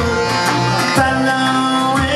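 Live reggae band music, with a saxophone playing long held notes over electric guitar, bass and drums.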